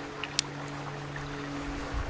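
A metal cartridge being slid into a chamber of a revolver's cartridge conversion cylinder, giving one sharp click about half a second in, over a faint steady low hum.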